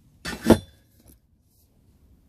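A brief rustle ending in a single sharp metallic clink about half a second in, as the cut steel tube or a metal part is handled on the mitre saw bench.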